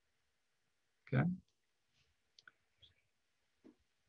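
A man's voice saying "okay" about a second in, followed by three or four faint short clicks spread over the next two and a half seconds, with quiet room tone between.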